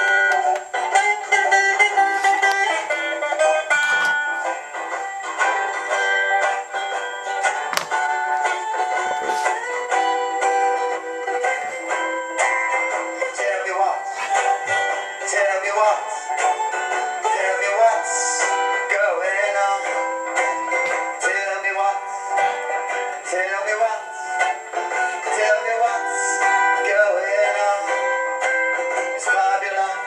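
Steel-string acoustic guitar strummed steadily, with a man singing along. The sound is thin, with no bass.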